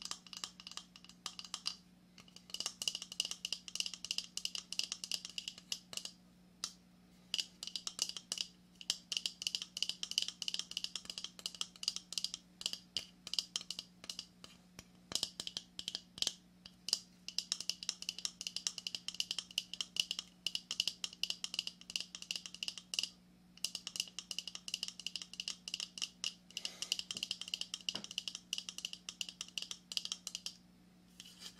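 Fingernails rapidly tapping and scratching on a hard lobster claw shell: a dense run of light clicks and scrapes, with a few short pauses.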